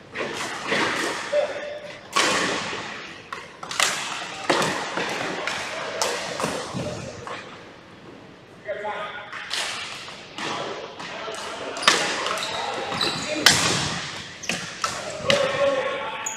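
Ball hockey play in a gym hall: repeated sharp knocks of sticks striking the ball and the hardwood floor, echoing in the large room. Players' voices call out at times between the hits.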